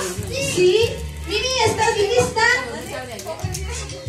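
A crowd of children calling out and chattering in high voices, over background music with a steady low beat.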